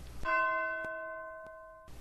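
A single bell-like chime struck once about a quarter-second in. It rings with several overtones and fades slowly, then cuts off suddenly just before two seconds.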